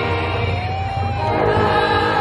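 Music with a choir of voices singing sustained, slowly gliding notes.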